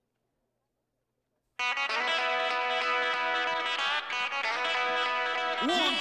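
After near silence, an electric guitar chord is struck about one and a half seconds in and left to ring, held steady for several seconds.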